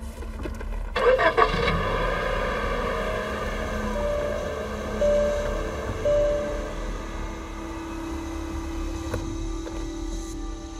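Car engine starting, catching with a short burst of loud noise about a second in and then running steadily, under film score music.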